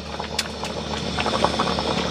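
Mutton curry bubbling in a kadhai on a gas stove: a steady hiss with many small pops, which grow busier about a second in, near the end of cooking.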